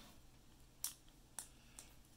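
A few faint clicks of multimeter test leads and probes being handled: three light ticks, the first, a little under a second in, the loudest, over near silence.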